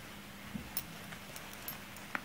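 Quiet handling noise of second-hand clothes being moved about in a pile, with a few light clicks, over a faint steady low hum.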